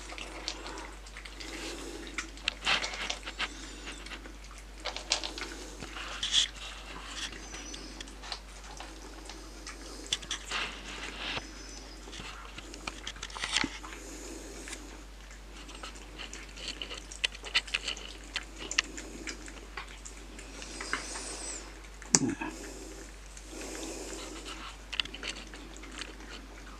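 Two cats eating wet cat food from bowls: soft, irregular chewing, smacking and licking, with small clicks. One brief, sharper sound comes a little over twenty seconds in.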